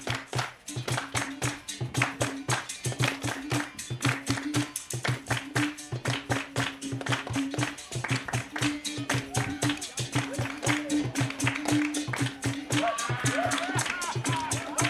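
Live capoeira music: a berimbau's repeating twanging note over an atabaque hand drum and an even beat of hand claps. Voices start singing near the end.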